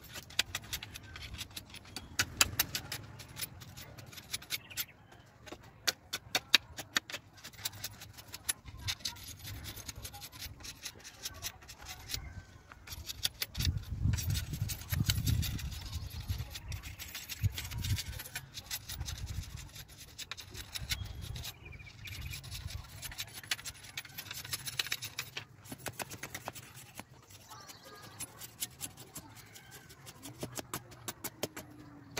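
Bamboo being split and shaved into thin strips with a knife: irregular sharp cracks, clicks and scraping. A low rumble rises in the middle.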